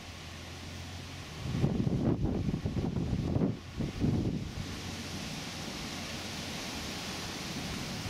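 Wind buffeting the microphone in gusts for a few seconds, over a steady hiss, with the low steady drone of a John Deere 6150R tractor underneath as it crosses the field.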